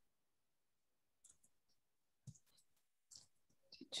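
Faint computer keyboard typing: a few scattered key clicks, coming quicker near the end as a search term is typed.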